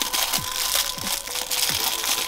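Clear plastic bag crinkling as a small plastic figurine is unwrapped by hand, under background music with a low drum beat.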